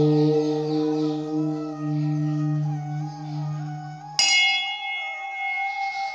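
Meditation music: a deep, steady held note sounds until about four seconds in, when a bell is struck once and rings on with several high, clear overtones.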